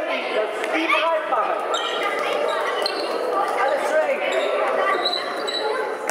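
Indoor football in an echoing sports hall: overlapping spectator and player voices, the ball being kicked and bouncing, and several brief high squeaks of shoes on the hall floor.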